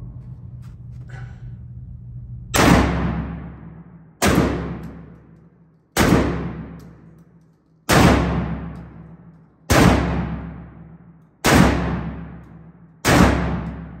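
Mossberg 930 SPX semi-automatic 12-gauge shotgun fired seven times, one shot about every two seconds. Each blast rings out with a long echo off the walls of the indoor range.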